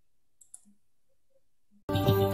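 Near silence with two faint, sharp clicks about half a second in; music starts abruptly just before the end.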